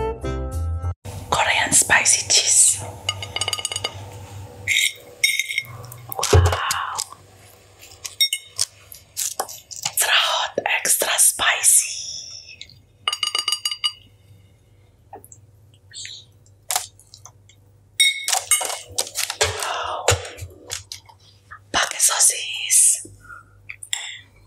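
A metal fork clinking and tapping on ceramic plates, with some strikes leaving a short ringing, close to a sensitive ASMR microphone, between soft whispered or breathy speech. Background music cuts off about a second in.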